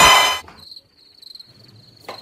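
Loud music and voices cut off abruptly about half a second in. Cricket chirping follows, a steady high pulsing trill: the stock sound effect for an awkward silence.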